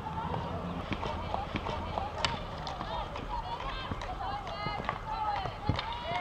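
Players' voices calling and shouting across a field hockey pitch, with a few sharp clacks of hockey sticks hitting the ball, the loudest about two seconds in.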